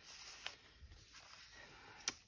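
Faint rustle of a paper journal page being turned by hand, with a soft click about half a second in.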